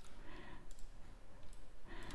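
A few faint computer mouse clicks over low room noise, from switching between 3D views in the software.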